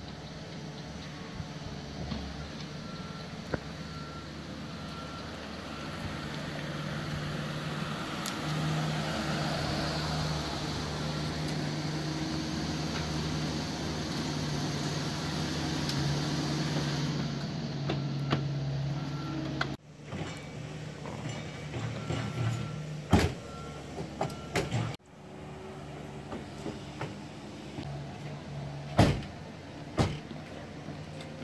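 Motor vehicle engine running steadily, with a repeating high beep like a reversing alarm. The sound breaks off twice, and a few sharp knocks follow.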